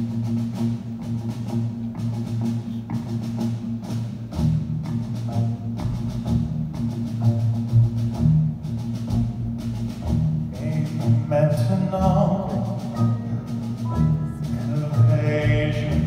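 Live band playing a song's introduction: a steady, evenly repeating percussion beat over upright bass and piano, with a melodic line coming in past the middle and building towards the end.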